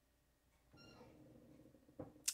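Near silence. A little under a second in comes a faint, brief high-pitched cry, with a faint low rustle after it.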